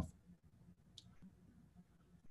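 Near silence with room tone and a single faint, short click about halfway through.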